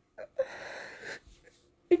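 A crying woman's long breathy breath, about half a second in, after a couple of short catches in her throat; she starts to speak again right at the end.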